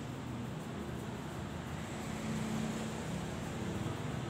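Steady low mechanical hum and background noise, with a faint held tone partway through.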